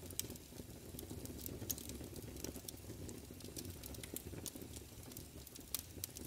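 Faint vinyl-record surface noise with no music: scattered crackles and pops over a low rumble, like a needle riding the groove.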